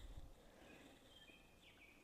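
Near silence: faint outdoor ambience, with a few brief, faint high bird chirps in the second half.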